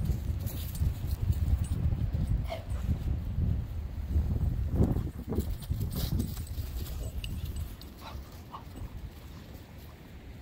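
Two dogs at play, giving a few short dog sounds, over a steady low rumble that drops off about eight seconds in.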